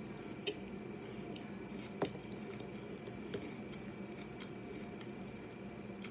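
Quiet chewing of a mouthful of crunchy Lucky Charms Honey Clovers cereal, with a few faint crackles and clicks scattered through it, the sharpest about two seconds in.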